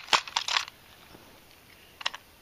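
A few quick sharp clicks of AA batteries and hard plastic as they are handled in a small toy train's battery compartment, within the first half second or so, then only faint room tone.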